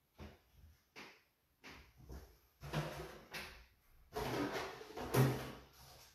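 Irregular bursts of rustling and handling noise from paper towels being crumpled and things being moved about on and under the table. The bursts are short at first and run longer and louder in the second half.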